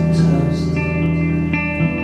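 Live rock band playing: electric guitars holding sustained chords over bass and drums with cymbal wash, and no vocal line.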